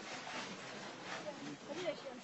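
Faint, indistinct voices of people talking, over a steady background hiss.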